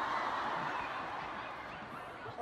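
Large arena crowd cheering and screaming, heard through a phone recording, slowly dying down.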